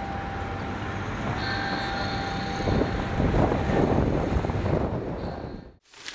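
Street traffic: a steady rumble of road noise that swells as a vehicle passes, growing louder about halfway through, then cutting off near the end.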